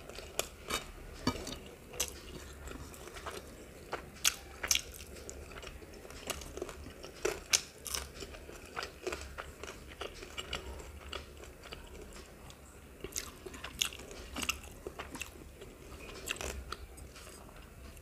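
Close-miked chewing of a mouthful of rice with crisp fried bitter gourd (karela bhaji): irregular wet smacks and sharp crunches, several a second, loudest in two clusters around a third and halfway through.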